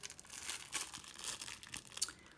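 Clear plastic wrapping crinkling as a pair of stork scissors sealed inside it is handled: faint, irregular crackles and rustles.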